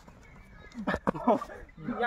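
A man's voice calling out short words about a second in, among low outdoor background noise.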